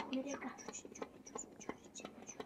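Short sharp clicks, several a second and unevenly spaced, with a brief low murmur of a voice just after the start.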